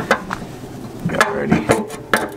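Stock exhaust muffler knocking and clanking as it is pulled and worked free from under the car: a string of short, uneven metal knocks and rattles.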